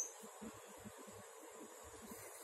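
Quiet room tone: a faint steady hum and hiss with soft, scattered low thuds.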